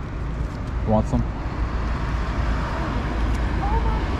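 Steady low outdoor rumble, with a short spoken syllable about a second in.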